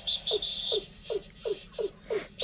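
A bird call repeating as a quick series of short notes that slide downward, about three to four a second, with a high, thin, pulsing note over the first second.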